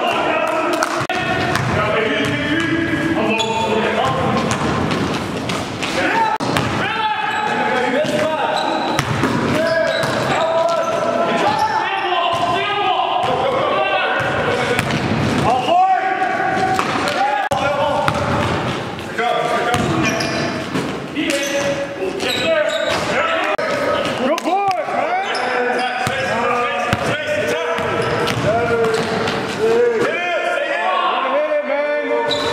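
Live sound of a basketball game on a hardwood gym floor: the ball bouncing, sneakers squeaking, and players' voices calling out.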